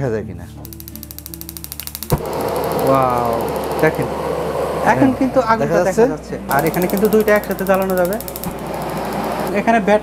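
Electronic igniter of a Gazi stainless-steel double-burner gas stove ticking rapidly as the knob is turned, ending in a sharp click when the burner catches, followed by the steady rush of the gas flame. The igniter ticks again for a couple of seconds later on, under louder voices or music.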